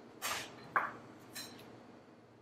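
A metal utensil stirring a thick yogurt and spice mixture in a small bowl: three short scrapes and clinks about half a second apart.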